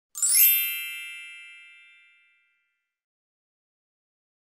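A bright intro chime struck once, ringing with several high tones and fading away over about two seconds.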